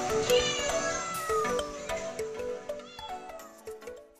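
A cat meowing, with a long falling call about a second in, over music with stepping notes that fades out near the end.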